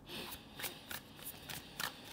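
Tarot cards being shuffled by hand: faint, irregular flicks and slides of card against card, the loudest one near the end.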